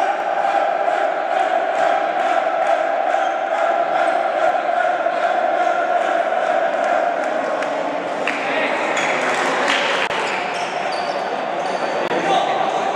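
A group of young men chanting and shouting together in celebration, with rhythmic thuds about three a second, echoing in a large sports hall; the shouting grows more ragged after about eight seconds.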